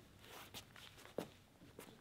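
Faint footsteps and shuffling movement on a stage floor, with a few light knocks, the sharpest a little past halfway.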